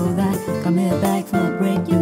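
Acoustic guitar music from an acoustic cover song, with long held melody notes over the guitar.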